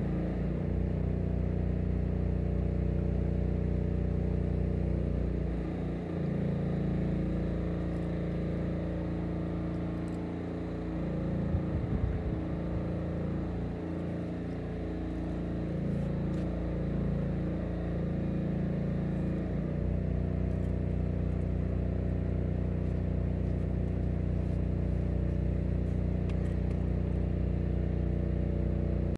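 An engine running steadily, a low hum whose pitch wavers a little through the middle stretch.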